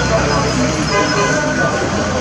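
Busy street ambience: several people talking in the crowd over a steady low hum of vehicle traffic that fades about a second in.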